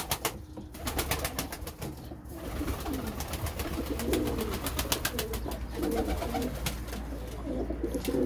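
Domestic pigeons cooing inside an enclosed loft, their low calls rising and falling through the middle of the stretch. Many sharp clicks and a burst of wing flapping are heard alongside.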